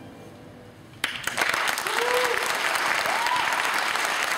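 The final note of the violin and piano dies away. About a second in, an audience breaks into loud, steady applause, with a couple of short voices calling out in cheers over the clapping.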